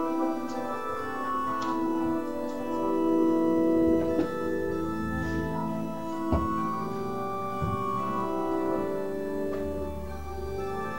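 Organ playing sustained hymn chords that change every second or so, the music for the closing hymn. Two brief knocks sound over it about four and six seconds in.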